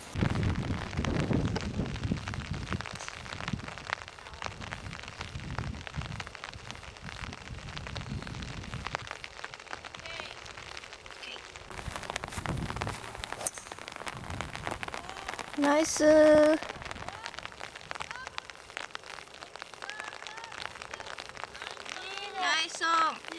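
Rain pattering steadily, with one sharp crack of a 5-wood striking a golf ball a little past halfway.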